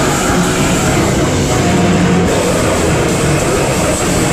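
A live rock band playing loud and steady, with distorted electric guitar, bass guitar and drums.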